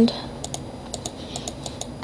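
Light, irregular clicking of a computer mouse and keyboard, about a dozen quick clicks in two seconds, as mesh vertices are picked by hand one at a time.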